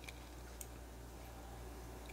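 Quiet room tone with a steady low hum and two faint ticks near the start, from hands handling yarn and scissors.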